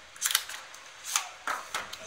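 A few sharp clicks and crinkles as a coiled charging cable in clear plastic wrap is pulled out of a cardboard phone box: a quick cluster near the start, then single ticks about a second in and later.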